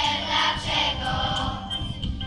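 A children's choir singing together in unison, with instrumental backing music underneath.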